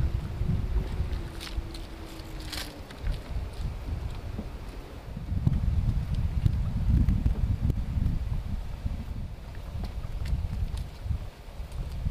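Wind buffeting the microphone in uneven gusts. A faint steady hum runs through the first three seconds, and there are a couple of faint clicks.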